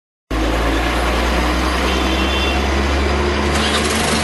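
A motor vehicle engine running steadily nearby: a constant low rumble under street hiss, cutting in just after the start.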